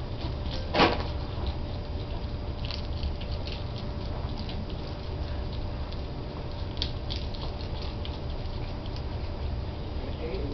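Baby skunks eating from a food bowl: a scatter of small clicks and crunches of chewing, with one sharper click about a second in, over a steady low hum.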